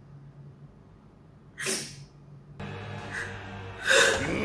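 One short, sharp sniffle of breath from a tearful person about halfway through, over a low steady hum; the episode's soundtrack comes back in quietly in the last second or so.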